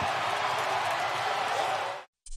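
Large stadium crowd cheering in a steady, unbroken wash of noise, which cuts off abruptly at the end.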